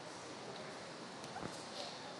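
Quiet hall room tone with a single faint click a little over a second in, followed by a few light taps.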